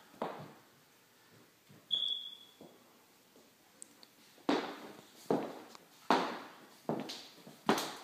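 Footsteps of a person walking, about five even steps a little under a second apart in the second half. Earlier there is a single knock with a brief high squeak.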